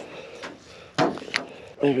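Two short, sharp clacks about a second in, a third of a second apart: a PVC pipe with a metal hose adapter being pulled apart from a garden hose.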